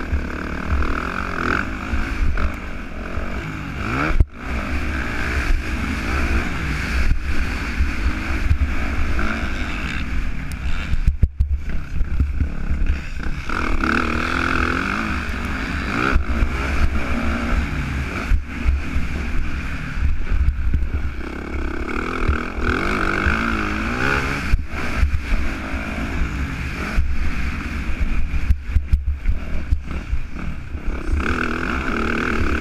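Yamaha motocross bike's engine revving hard and changing pitch as it is raced over a dirt track, heard from the on-board camera with wind rumbling on the microphone. The sound dips sharply for a moment twice, about four and eleven seconds in.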